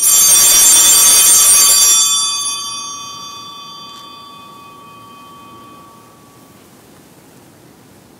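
Altar bells (Sanctus bells) rung for about two seconds at the elevation of the consecrated host, then ringing out and fading over several seconds.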